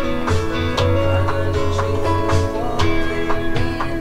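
A pop song arrangement playing: piano and pad chords from a Nord Electro 5D stage keyboard over a backing of electric guitar, bass and a drum beat about twice a second.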